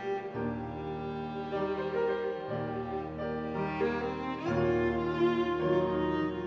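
Piano trio playing classical music: violin and cello bowing sustained melodic lines over piano. Low cello notes change every second or so.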